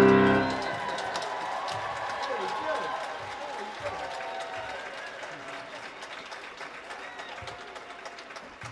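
The song's last grand-piano chord ringing out and dying away, then audience applause with voices in the crowd, slowly fading.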